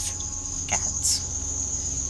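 Crickets chirping in a steady, continuous high trill.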